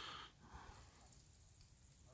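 Near silence, with a faint short breath from the person holding the camera at the very start.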